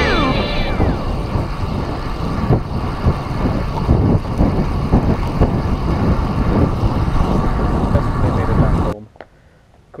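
Wind rushing and buffeting over an action camera's microphone while riding a road bike along a paved trail, a steady low rumble that cuts off suddenly about nine seconds in. At the very start a rock music track ends with a falling glide.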